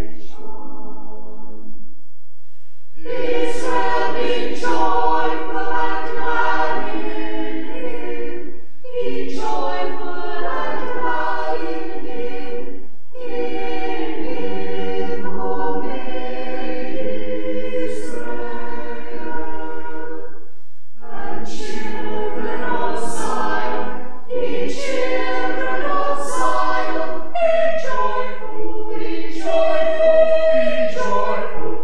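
Mixed church choir of men's and women's voices singing unaccompanied, in phrases separated by brief pauses.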